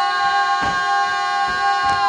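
Folk singers holding one long, steady note of a traditional Sinj song, with dancers' feet stamping on the stage twice.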